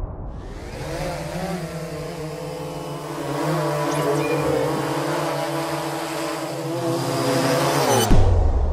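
Multirotor drone's motors and propellers humming, steady with a slight waver in pitch, cutting off suddenly at the end.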